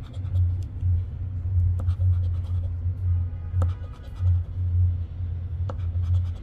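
A casino poker chip scratching the coating off a paper scratch-off lottery ticket, with a few sharp clicks along the way. Underneath are background music and a low, pulsing rumble, which is the loudest part.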